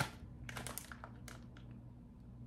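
Light crinkles and clicks of a clear plastic wax-melt package being handled, a few in the first second and a half, over a low steady hum.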